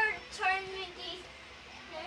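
A boy singing: two loud, high sustained notes in the first half second, then his voice drops away to quieter singing.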